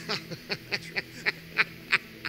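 Men laughing into a microphone: a run of short, breathy "ha" bursts, about four a second.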